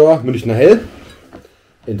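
A man's voice talking, with a few faint clinks of glass and bottle being handled in the pause between words.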